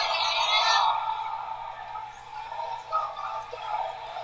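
Thin, tinny show audio with almost no low end: a crowd of protesters chanting slogans. The voices are loudest in the first second and fade to a fainter haze.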